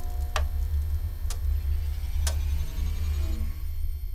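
Sound effect of lab power and equipment coming back on: a steady low electrical hum under held electronic tones, with three sharp clicks about a second apart and a tone that falls in pitch near the end.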